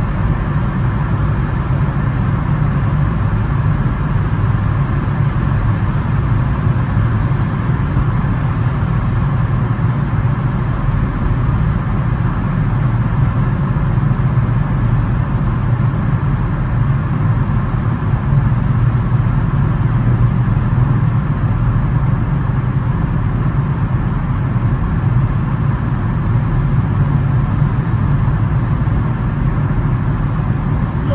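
Steady road noise inside a car's cabin while driving at speed through a road tunnel: a low tyre and engine drone that holds even throughout.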